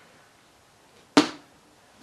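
Quiet room tone broken by a single sharp knock a little over a second in, dying away quickly.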